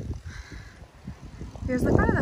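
Quiet outdoor background, then a harsh, arching bird call, a crow-like caw, starting near the end.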